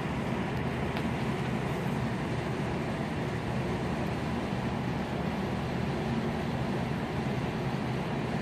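Steady machine hum: an even rushing noise over a faint low drone, unchanging throughout.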